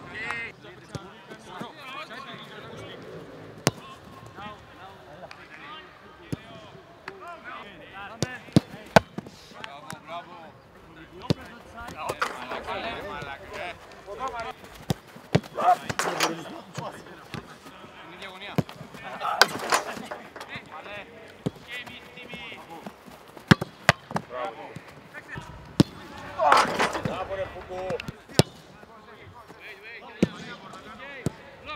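Footballs struck hard in a shooting drill: many sharp thuds at irregular intervals. Players' voices and shouts run between them, with a few louder shouts in the second half.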